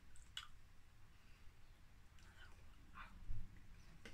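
Faint scattered clicks and a soft low thump a little over three seconds in: incidental noises of a person signing, from hands brushing and tapping together and the lips and tongue moving.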